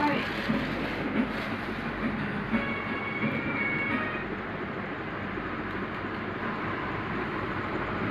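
A steady, even rumble of noise, with faint voices and music behind it.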